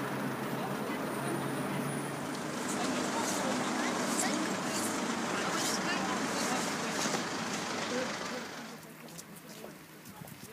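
Steady outdoor city noise with road traffic and the indistinct voices of people walking, dropping noticeably about eight and a half seconds in.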